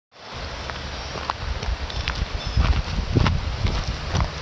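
Steady rushing of the fast-flowing Niagara River, overlaid by gusty wind buffeting the microphone as a low rumble that strengthens about halfway through, with scattered light crackles and clicks.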